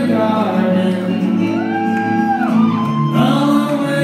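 A male singer performing live with his own strummed acoustic guitar, one long held note about halfway through, heard from the audience in a large hall.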